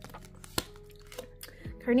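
Oracle cards being handled as one card is moved from the front of the deck to the back: a sharp click a little over half a second in and a few softer taps, over faint background music.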